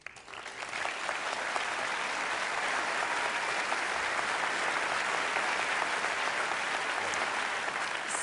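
Studio audience applauding, swelling over the first second and then holding steady.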